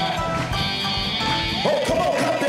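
Live gospel worship band playing, with a male lead singer's vocal lines and shouts over the music.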